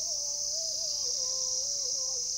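Crickets chirring in a steady, high, unbroken drone, with a faint thin tune wavering slowly in pitch underneath.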